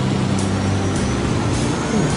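Sound effect of a cartoon race car's engine running hard: a steady low drone under a rushing noise.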